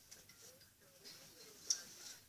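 Faint room sound with light ticking and one sharper click near the end.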